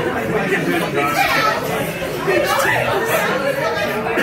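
Restaurant chatter: several people's voices talking over one another.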